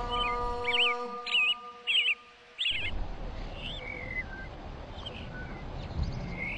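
Birds chirping in short, wavering calls over a held musical chord. The chord stops suddenly a little under three seconds in, and fainter chirps carry on after it.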